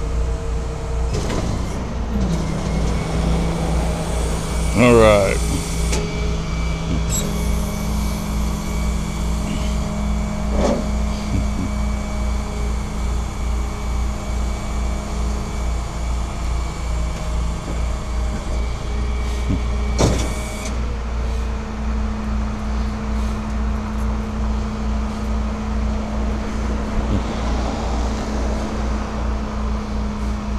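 A vehicle engine idling with a steady low pulsing hum. About five seconds in a brief wavering whine sweeps upward, and there is a single sharp knock about twenty seconds in.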